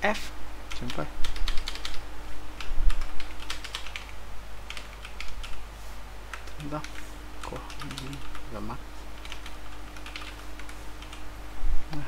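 Typing on a computer keyboard: quick, irregular keystrokes, dense in the first half and thinning out later, with a few short spoken words.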